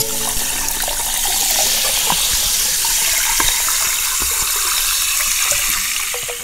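A stream of liquid pouring steadily into a glass over a lime slice, splashing and fizzing with bubbles, recorded close up.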